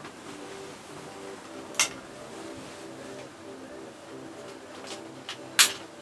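Two sharp clicks about four seconds apart, light switches being flicked as the room light is turned off and the lighting is changed over to the key light.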